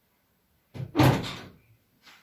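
A sudden double thump about three-quarters of a second in, the second hit louder, dying away within about half a second.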